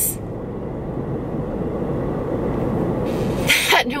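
Steady low rumble of a car's cabin, road and engine noise filling a pause in speech.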